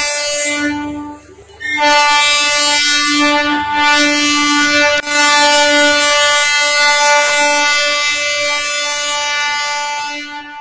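Train horn blowing: a first blast that stops about a second in, then after a short break a single steady blast held for about eight seconds, dipping briefly about five seconds in.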